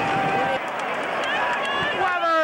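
Stadium crowd murmur, many voices talking at once, with a low rumble that drops away about half a second in.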